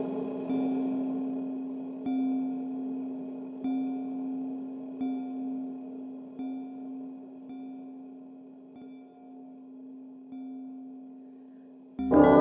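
Electronic bell tones struck one at a time, about every second and a half, eight in all. Each one rings on with a low, steady tone and a few higher overtones, and the strikes grow fainter toward the end.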